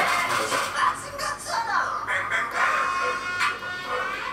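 K-pop song playing from a music video, heard in the room through its playback speaker.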